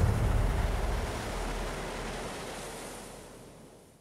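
A steady wash of noise fading out to silence over about four seconds, just after a low, regular beat stops near the start: the tail of the closing soundtrack.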